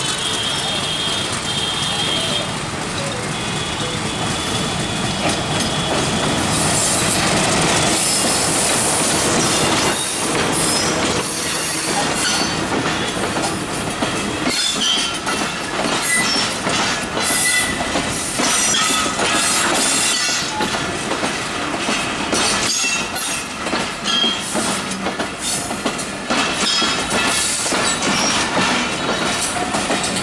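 Diesel-hauled passenger train passing close by: the locomotive goes past, then the coaches roll by with a steady rhythmic clatter of wheels over the rail joints.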